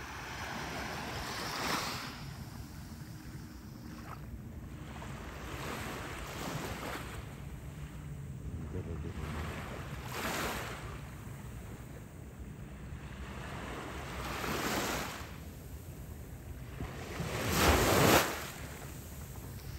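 Small sea waves washing onto a sandy beach, with a few louder surges as swells break and rush up the shore, the loudest near the end. Wind rumbles on the microphone throughout.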